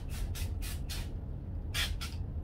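Hand trigger spray bottle misting plant leaves: four quick sprays in the first second, about four a second, then one more near the end.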